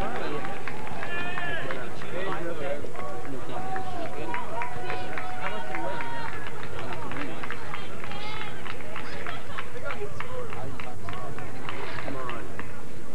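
Indistinct voices of several spectators and players calling out at once over an outdoor soccer match, none of them clear words. A steady low background noise runs underneath.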